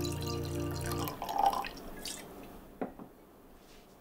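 Wine being poured from a glass bottle into a wine glass, the liquid trickling off about two seconds in. The bottle is then set down on the wooden table with a short knock near three seconds.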